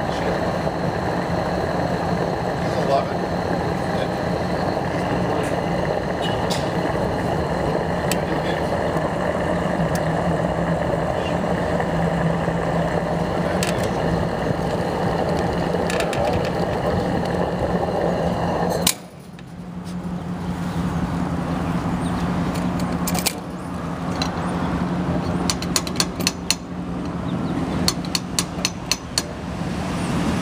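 Gas pump nozzle running fuel into a pickup's tank with a steady rush and hum, which stops abruptly about two-thirds of the way through as the nozzle shuts off with the tank full. A single click follows, then a quick run of sharp clicks near the end.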